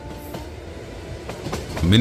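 Train running on rails, its wheels clacking over the rail joints and growing louder. A held music chord dies away in the first moment.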